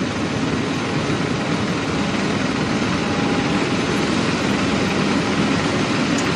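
Jet airliner running at the stand, a steady rushing roar with a faint low hum underneath.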